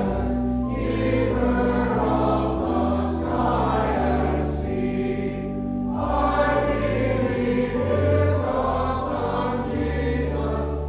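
Choir singing a hymn with organ accompaniment, the voices moving over steady held bass notes.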